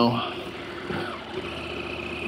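KTM 890's parallel-twin engine running steadily at idle as the motorcycle rolls off slowly.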